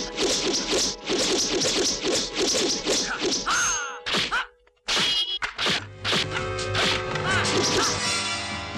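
Dubbed kung fu film fight sound effects: a fast run of whacks and swishes from blows and weapon strikes, with a music score beneath. The sound drops out briefly about halfway through.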